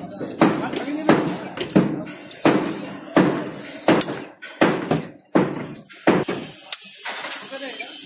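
A hand-operated cartridge dispensing gun clacking with each squeeze of its trigger as Fischer chemical anchor resin is pumped into a drilled hole in concrete: about a dozen sharp knocks at a fairly even pace, roughly one and a half a second.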